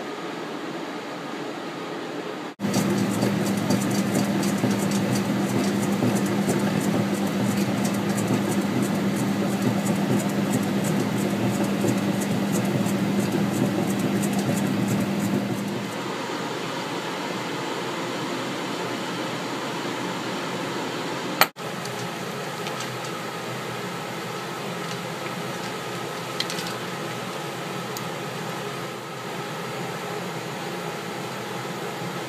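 35mm film-handling machinery in a projection booth: a motor comes in abruptly a few seconds in, running with a steady low hum and fast fine ticking, then drops back about halfway through to a quieter steady machine hum. A sharp click about two-thirds of the way through.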